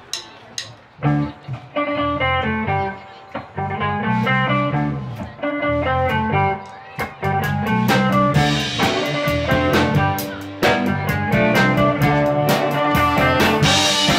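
A band playing a song with electric guitar, bass and drum kit. It starts after a few sharp clicks about a second in and grows fuller and brighter about eight seconds in.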